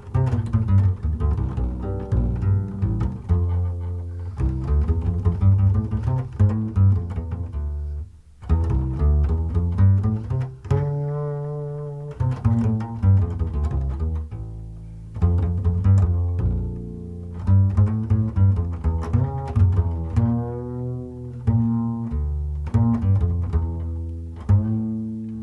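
Slow jazz ballad played by a duo of double bass and tenor saxophone. The bass plucks low notes under a saxophone melody with vibrato, with a short pause about a third of the way through.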